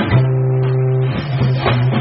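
Rock band playing live: bass and electric guitars hold a low sustained note that shifts about a second in, with a couple of drum hits.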